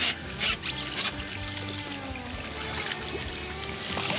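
Background music, with water splashing a few times in the first second or so as a barracuda is held in the water against the side of a boat, then lighter water sounds.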